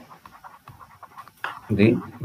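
Male lecturer's voice pausing between words, with faint breathing in the gap before he speaks again near the end.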